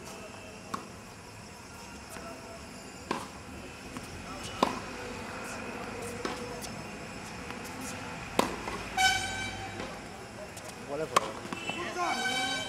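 Tennis ball struck by rackets and bouncing on a hard court: sharp pops, a few seconds apart. A horn sounds for about a second, around nine seconds in, and again at the very end.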